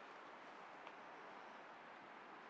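Faint, steady rushing of a distant waterfall, barely above near silence, with one tiny click just before the middle.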